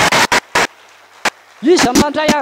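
A few sharp clicks, then a man's amplified voice through the church PA calling out in short bursts that rise and fall in pitch, starting shortly before the end.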